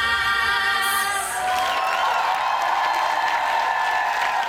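A children's vocal group holds the final note of a pop song over a backing track. About a second and a half in, the song ends and the audience breaks into applause and cheering.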